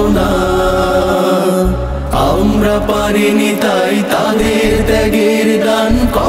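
Male voices singing a Bengali Islamic song (tarana), holding long, bending notes over a deep, steady bass drone.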